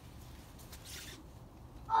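A brief, soft scrape about a second in as gloved hands gather snow off a car's hood, over a faint steady background.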